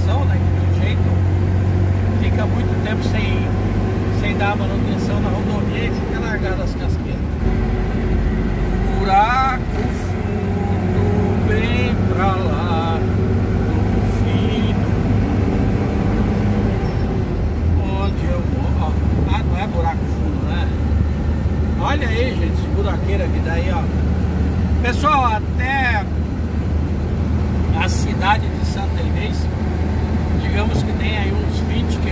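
Truck engine droning steadily, heard from inside the cab while driving, with road and tyre noise. A wavering voice-like sound comes and goes over it a few times.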